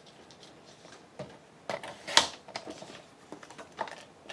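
Sliding paper trimmer cutting a strip of paper: a short, sharp scrape of the blade about two seconds in, with smaller taps and rustles of the paper being handled around it.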